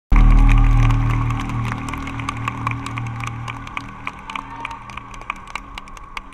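A live rock band's held low chord through the concert PA, loud at the start and fading away over several seconds as it rings out, heard through a phone's microphone. Sharp scattered claps come through over it.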